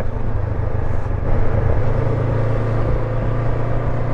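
Honda NX500 motorcycle's parallel-twin engine running at a steady cruise, a low even drone under a rush of road and wind noise.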